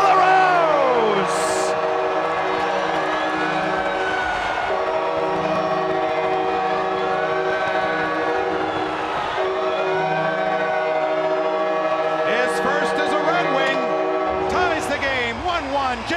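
Arena goal horn sounding a steady, sustained chord after a home-team goal, cutting off about fourteen and a half seconds in.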